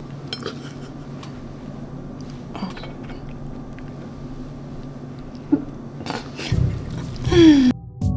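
Scattered light clinks and taps of a plate and food being handled on a kitchen counter, over a steady room hum. Near the end comes a low thump and a brief louder burst with a falling, voice-like sound, then the sound cuts off abruptly.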